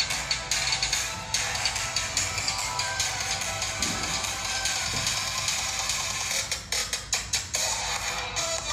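A music track with a steady pulsing beat playing from the iBall iTab Bizniz Mini tablet's built-in speaker, as a test of its audio quality.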